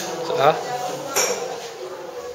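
A single sharp metallic clink about a second in, from metal dental instruments being handled.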